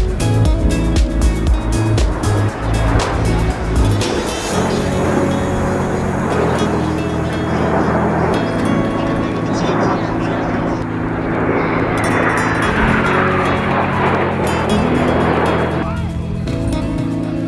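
Background music with a steady beat. From about four seconds in, the rushing noise of a formation of jet aircraft rises under it, with a whine that falls in pitch near the end as the jets pass.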